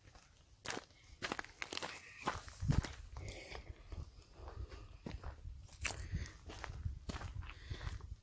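Footsteps on dry, stony gravel ground, an irregular series of crunching steps starting about a second in.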